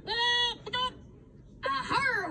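A cartoon character's drawn-out vocal cry, one steady pitched call about half a second long followed by a brief shorter one, played through a TV speaker. Speech starts again near the end.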